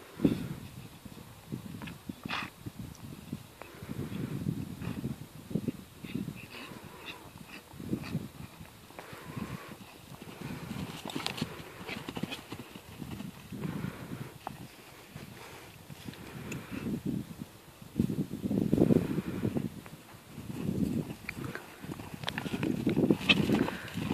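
Pony's hooves thudding on turf as it canters across a grass field, louder near the end as it passes close by.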